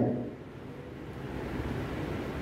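A pause in a man's speech into a handheld microphone, his last word trailing off at the start, then a low, steady rumble of background noise.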